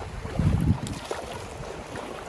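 Wind gusting on the microphone, with a low rumble about half a second in, over a steady wash of small waves in shallow sea water.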